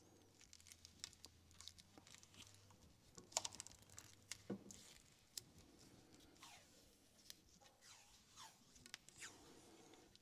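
Faint handling of rubber heater hoses and a roll of tape: scattered small clicks and rustles, with short tearing sounds of tape being pulled off the roll.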